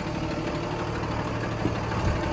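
Cummins diesel engine of a Ford F750 bucket truck idling steadily, a low even hum.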